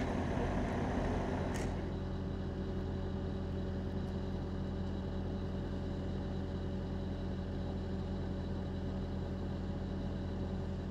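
Diesel engine of a Bobcat compact track loader running steadily at idle, a low, even hum.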